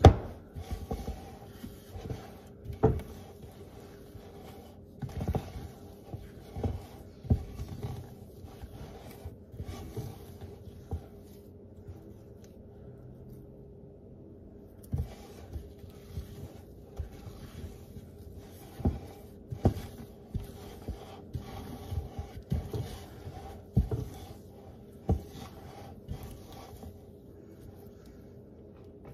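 A hand kneading and squeezing sticky, wet flour-and-buttermilk dough in a ceramic bowl: irregular soft thuds and rubbing as the dough is pressed, pulled and pushed against the bowl, with a quieter pause near the middle.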